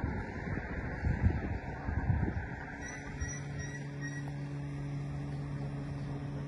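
Wind buffeting the phone's microphone, then from about three seconds in a steady low engine hum.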